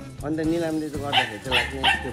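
A dog whining and yelping in a run of drawn-out, rising and falling calls: one long whine, then several shorter ones.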